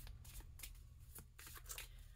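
Near silence with a faint rustle and a few soft, short clicks, as of small objects being handled.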